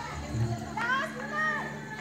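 Children's voices calling out in the distance, high and rising, for about a second near the middle, over a faint low beat repeating about twice a second.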